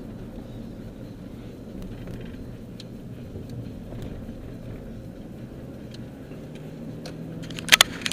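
Steady engine and road rumble inside a moving car's cabin, with a few faint ticks. Near the end comes a quick cluster of loud, sharp knocks.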